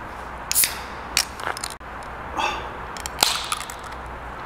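A handful of short clicks and rustles, the loudest near the end, over a steady low hum.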